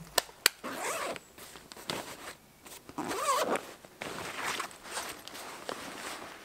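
A zipper pulled in a few short strokes, after two sharp clicks near the start.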